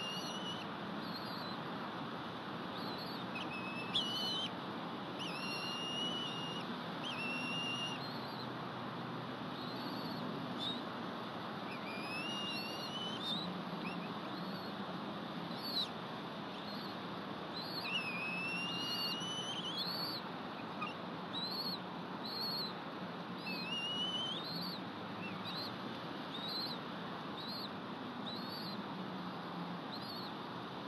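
Birds calling: short high whistled notes repeating about once a second, with several longer slurred whistles that rise in pitch, over a steady background hiss.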